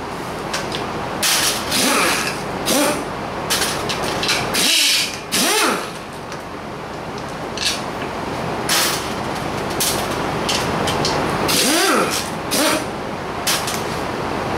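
Pneumatic impact wrench run in repeated short bursts, spinning nuts off an air-cooled VW 1600 engine case during teardown.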